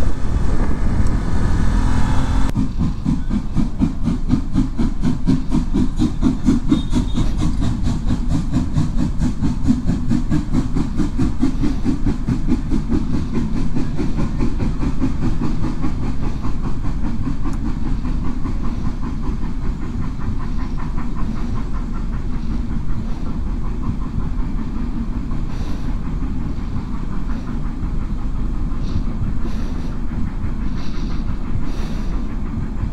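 After about two seconds of riding wind noise, the coaches of the Molli narrow-gauge steam railway roll past over a level crossing, their wheels clacking in a steady, even rhythm.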